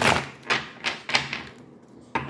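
A deck of tarot cards being shuffled by hand: about five sharp card slaps and taps in a second and a half, the first the loudest.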